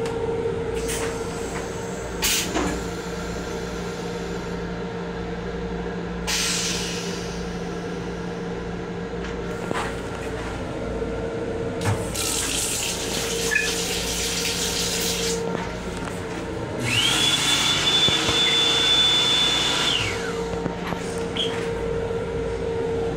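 Steady hum of a rail car, with a knock about two seconds in. About halfway through, the sink faucet runs briefly. Then the hand dryer blows for about three seconds, its motor whine rising as it starts and falling away as it stops.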